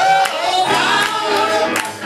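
Congregational worship music: several voices singing together.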